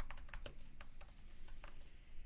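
Computer keyboard typing: a quick, faint run of keystrokes as a short phrase is typed out.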